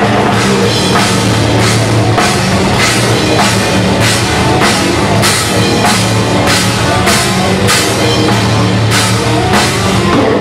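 A death metal band playing live, heard from beside the drum kit: pounding drums with a cymbal struck about twice a second over thick, low distorted guitars.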